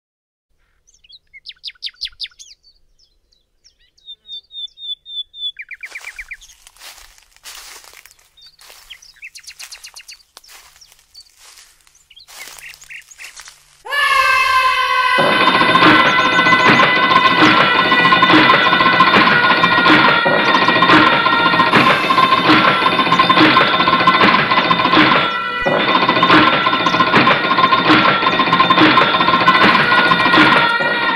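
Short high bird-like chirps and trills, then a scatter of clicks. About halfway through, loud music starts: a sustained held chord with a steady beat.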